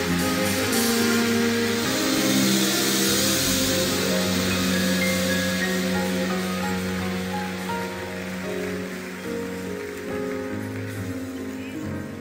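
Live band with a violin section playing long held chords at the close of a worship song, easing down in loudness toward the end.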